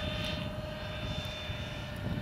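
Twin 70 mm electric ducted fans of a radio-controlled A-10 model in flight, a steady whine holding one pitch with a thin higher tone above it.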